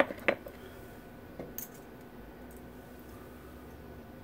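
A few light clicks and taps of small metal safety-razor head parts being handled, the loudest two right at the start, then a couple of faint ticks about a second and a half in.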